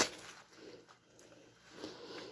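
Plastic packaging and bubble wrap rustling as items are handled: a brief crinkle right at the start, then faint, scattered rustles.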